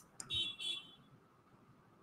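Two short, high electronic beeps in quick succession, like a notification chime, lasting about half a second, followed by near silence.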